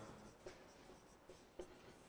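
Faint strokes of a marker writing on a whiteboard, a few short light scratches and taps.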